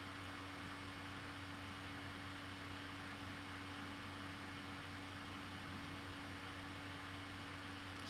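Faint steady room tone: a low hum with an even hiss, unchanging throughout and with no distinct events.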